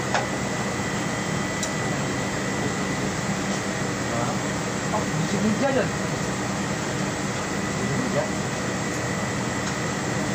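Steady mechanical drone of workshop machinery with a constant hiss, low hum and a thin steady high whine, with indistinct voices murmuring faintly in the background.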